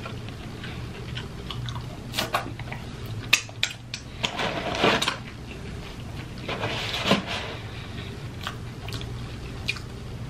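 Close-miked chewing and biting of fried fast-food snacks, with irregular mouth clicks over a steady low hum.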